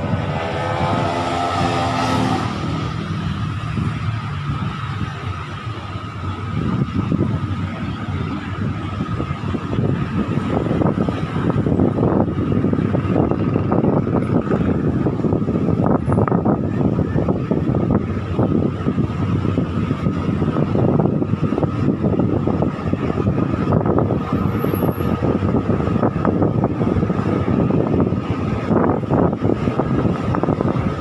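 Diesel passenger train pulling away and gathering speed. An engine note rises at first, then the rumble and rattle of the running train and wind grow louder at about seven seconds and stay loud, over a faint steady whine.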